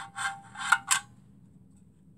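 Small sheet-metal fuel tray sliding into the firebox slot of a miniature horizontal steam boiler: metal scraping on metal with a faint ringing tone, ending in two sharp clinks about a second in.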